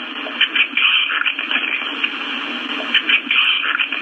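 Loud hiss and irregular crackling of an amplified, noise-boosted audio-recorder playback, heard through a television speaker with a narrow, tinny range.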